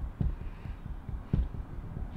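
Low, dull thumps about once a second, each followed by a softer one, in a slow heartbeat-like pattern.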